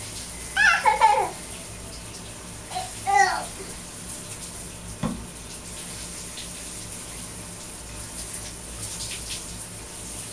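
A toddler babbles twice in short high-pitched bursts in the first few seconds, over a steady rush of running water. There is a single soft knock about five seconds in.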